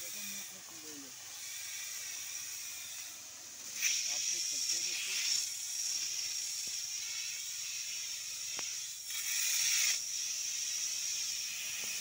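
Hose-fed pesticide spray lance hissing steadily as its nozzle atomises liquid into a fine mist. The hiss grows louder about four seconds in and again near ten seconds.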